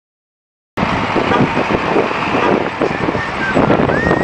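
Roadside outdoor noise: road traffic with wind buffeting the microphone. It cuts in suddenly from silence under a second in.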